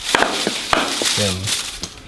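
Rustling and crinkling as a tall potted plant is handled and set down on a concrete floor, with a few sharp knocks and clicks.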